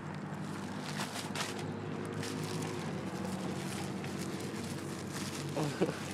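A steady low motor or engine hum, with a few sharp clicks and crackles about one and two seconds in.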